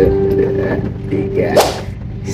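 Acoustic guitar chord ringing out, held and slowly fading, then a short, sharp swish-like burst about one and a half seconds in.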